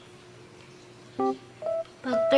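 Faint steady hum, then two short beep-like tones about a second in, the second higher than the first.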